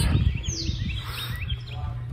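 Small birds chirping in the background: one falling whistle, then several short chirps, over a low steady rumble.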